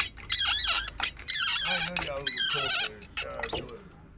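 People talking in a short stretch of conversation, with no other clear sound.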